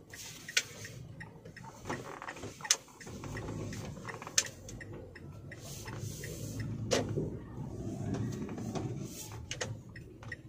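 Inside a car's cabin while driving: a steady low engine and road hum, with irregular sharp clicks and taps, the loudest about half a second, two and a half, and four and a half seconds in.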